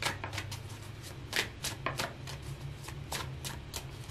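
A tarot deck being shuffled by hand: a quiet run of irregular card snaps and clicks.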